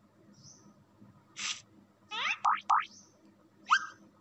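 Cartoon sound effects of an animated lesson's slide transition: a short swish about a second and a half in, then a few quick, springy rising glides like a boing, and near the end one more upward sweep that settles on a brief held tone.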